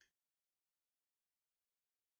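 Near silence: the sound track drops out completely just after the start and stays silent.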